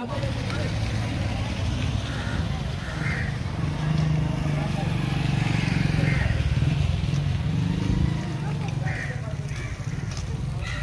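A motor vehicle engine running close by, a steady low rumble, with indistinct voices faintly in the background.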